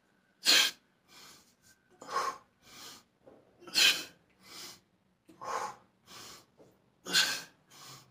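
A man's forceful breaths through the nose and mouth, paced to one-arm dumbbell curl reps: a sharp exhale about every second and a half to two seconds, five in all, with quieter inhales between.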